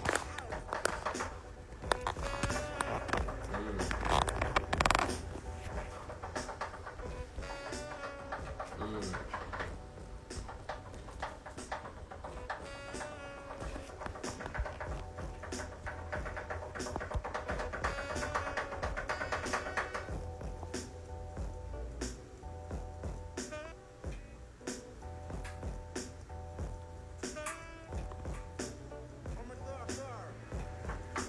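Live beat music played on a sampler's drum pads: a steady deep bass under regularly repeating drum hits and pitched melodic lines.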